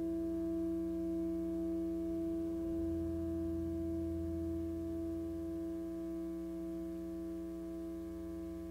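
Ambient electric guitar drone: one steady held note with its overtones, slowly fading, and a deeper low note swelling in about three seconds in and dying away near six seconds.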